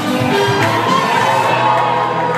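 Loud recorded dance music echoing in a large hall, with crowd voices over it.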